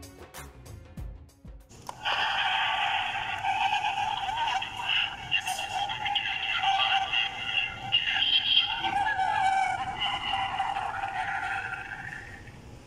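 Battery-powered Halloween talking-portrait decoration with a sound sensor, set off and playing its recorded voice track through its small speaker for about ten seconds, thin and midrange-heavy. Background music with a beat plays for the first couple of seconds, then stops as the portrait starts.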